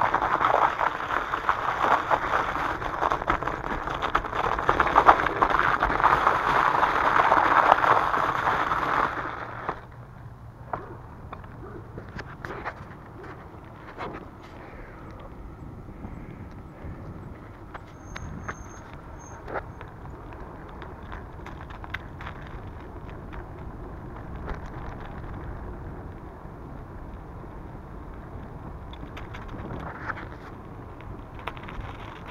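Bicycle tyres crunching over ice-crusted grass and frozen leaves, a loud dense crackle for about the first nine seconds. After that it gives way to a much quieter rolling noise with scattered clicks.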